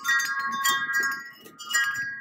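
Chimes ringing: clusters of bright metal tones struck about four times, each ringing on.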